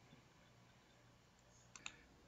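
Near silence: room tone with a low hum, broken near the end by two or three faint, sharp clicks in quick succession.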